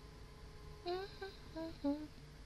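A woman humming a short four-note phrase with her lips closed, starting about a second in; the notes step down in pitch and the last is the loudest.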